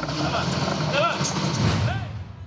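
Diesel excavator engine running steadily on a road construction site, with people's voices faintly in the background.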